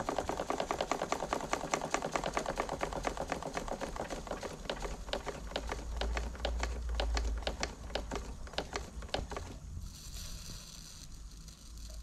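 Small two-cylinder model steam engine of a Krick RC steam launch running down with its burner off: a rapid, even chuffing that gets slower and slower as boiler pressure falls, then stops about three-quarters of the way through.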